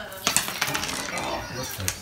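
Dice clattering on a hardwood floor: a quick run of sharp clicks, then another click near the end, over the crinkle of plastic wrap being pulled apart.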